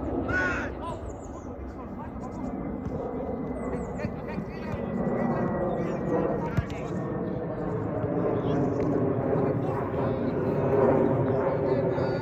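Sideline sound of a youth football match: scattered shouts and calls from players and spectators over a steady outdoor rumble, with one sharp knock of a football being kicked a little past halfway through.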